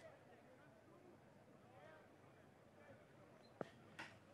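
Near silence with faint distant voices and a single short click about three and a half seconds in.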